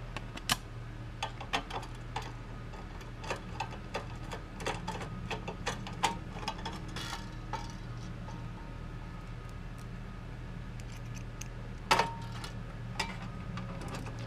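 A metal licence plate and its screws being fitted by hand to a steel plate bracket: irregular light clicks and clinks, with a few sharper clacks near the start, in the middle and near the end, over a steady low hum.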